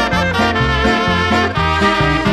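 Instrumental Mexican ranchero music: trumpets play the melody over a stepping bass line.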